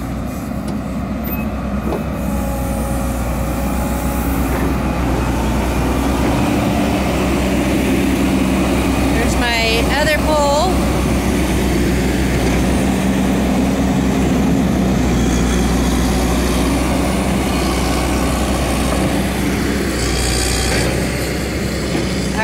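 Backhoe loader's engine running steadily under load while its bucket digs into sandy soil, a loud continuous low drone.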